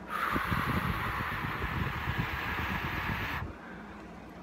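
A man making a long hiss with his mouth, imitating air leaking out of a car's flat tyres, held for about three and a half seconds before it cuts off.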